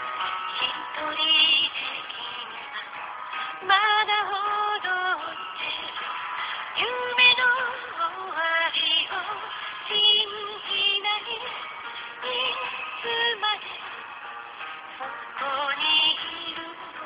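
A Japanese song with a woman singing over instrumental accompaniment, heard from an FM radio broadcast and recorded on a phone's voice recorder. It sounds thin, with the treble cut off.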